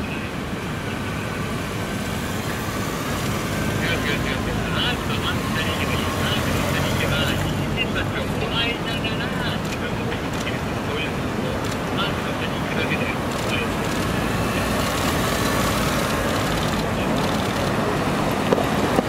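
Slow motorcade passing: police motorcycles, a police patrol car, a black limousine and black vans, their engines and tyres making a steady, gently swelling traffic rumble. Indistinct voices of onlookers are heard over it, strongest a few seconds in.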